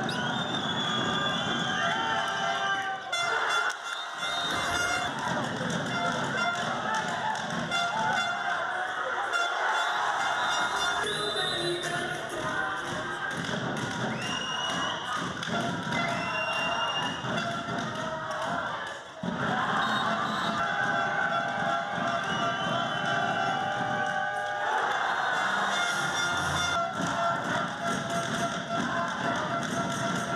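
Indoor handball match sound: music and crowd voices filling the arena, with thuds of the ball bouncing on the court. The sound changes abruptly several times.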